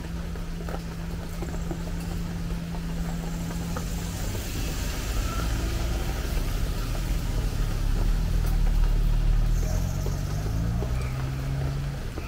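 A van's engine running close by and driving past on the wet street. A steady low hum gives way to a rumble that is loudest about two-thirds of the way through, its engine note rising in pitch as it pulls away.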